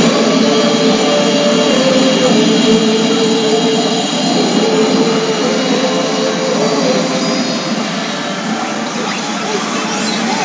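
CR Garo FINAL ZZ pachinko machine playing its preview-effect sound, a loud steady rushing with a few shifting tones, over the constant din of a pachinko parlor.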